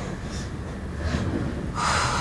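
A person breathing hard in distress, with sharp gasps for air about a second in and again, louder, near the end, over a steady low hum.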